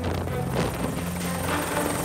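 Military helicopter running on the ground, its rotor and engine making a steady hum, under a background music bed.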